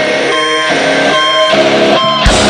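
Live rock performance with electric guitar playing nearly alone in a break in the song: ringing chords repeated a little under a second apart, with the drums and bass dropped out.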